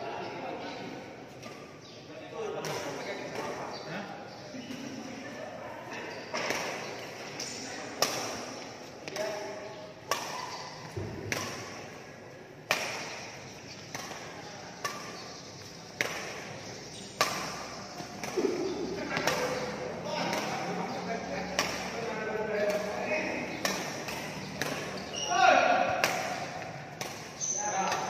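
Badminton rackets hitting a shuttlecock back and forth in a fast drive rally: sharp cracks of about one a second, ringing in a large hall, with voices in the background.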